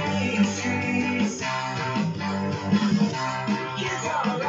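Electric guitar playing a punk-rock song's chords, with a low bass line sustained underneath.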